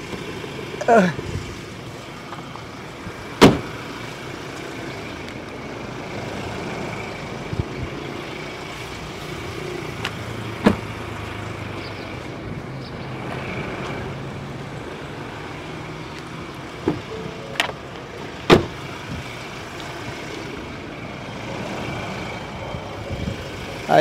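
Ford Ranger Raptor's 2.0-litre bi-turbo diesel idling steadily, with a few sharp knocks over it, the loudest about three and a half seconds in.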